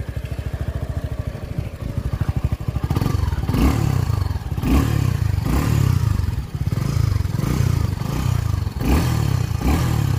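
Suzuki Gixxer SF 250's single-cylinder engine idling just after starting, then revved in repeated throttle blips, about one a second, louder from about three seconds in.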